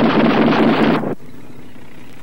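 A loud burst of battle gunfire noise on an old documentary soundtrack. It cuts off suddenly about a second in, leaving a quieter steady low hum.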